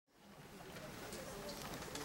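Faint murmur of a seated audience in a large hall, fading in from silence, with a low steady rumble of room noise.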